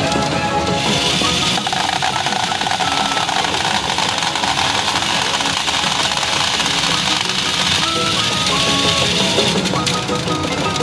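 PA Ginpara Mugen Carnival pachinko machine playing its hibiscus-mode music, a melody of steady notes, over a constant hiss-like din of a pachinko parlor.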